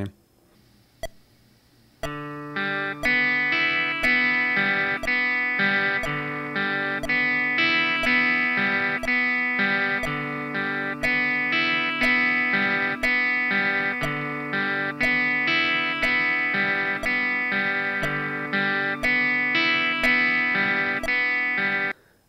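A metronome clicking about once a second, joined about two seconds in by a clean electric guitar, a Stratocaster-style Squier, playing a steady arpeggio pattern across the strings with alternate down-up picking, two notes to each click.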